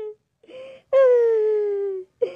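A high-pitched drawn-out wail of pain from a cartoon character just hit by a firecracker blast. A short cry comes about half a second in, then about a second in a long wail slowly falls in pitch.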